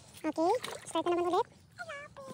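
A young child's high-pitched voice making three short vocal sounds. The first slides in pitch and the second is held briefly.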